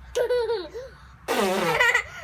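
A toddler squealing with laughter in two short, high-pitched bursts, the second louder and breathier.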